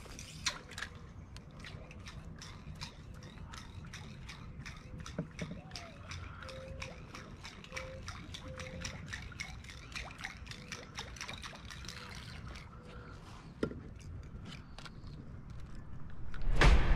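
Faint small water sounds, dripping and lapping around a kayak hull at a dock piling, with a steady run of light ticks about four a second.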